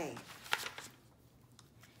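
Loose sheets of printed paper rustling briefly as they are handled, with one sharp crackle about half a second in.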